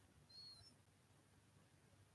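Near silence: room tone, with one faint, brief high chirp about half a second in.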